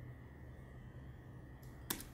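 Quiet steady low hum of room tone, with a single computer-keyboard key click near the end.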